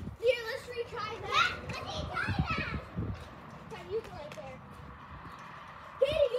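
Children's voices and shouts at play, not close to the microphone, strongest in the first three seconds and fading after. A few low thuds come about two to three seconds in.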